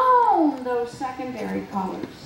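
A woman's voice amplified through a handheld microphone, speaking in an exaggerated sing-song with long swoops up and down in pitch; it falls away near the end.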